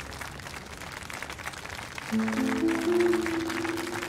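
Background drama score, quiet at first, with a few held notes coming in about halfway. Faint applause can be heard underneath.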